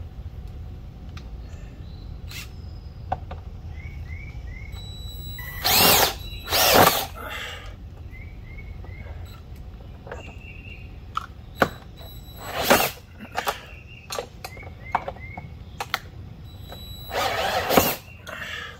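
Cordless drill-driver driving screws into a metal mast bracket on a wooden fence post. It runs in short bursts: two close together about six seconds in, one near thirteen seconds and a longer run near the end.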